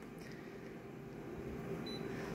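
Office copier's touchscreen control panel giving a short high beep as a key is pressed near the end, over a steady low hum.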